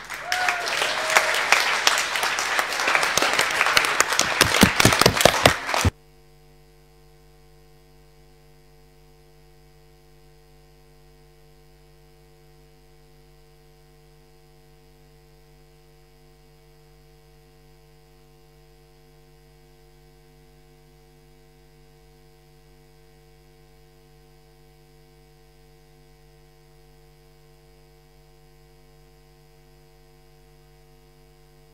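Audience applause lasting about six seconds, cut off suddenly. After that only a faint steady hum of even tones remains.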